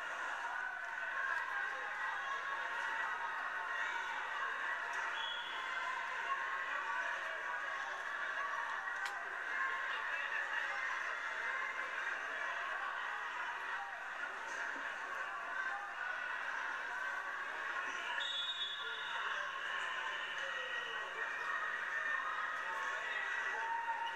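Steady, indistinct chatter of a crowd in a gymnasium during a high school wrestling match, heard as the match video plays back through a TV speaker.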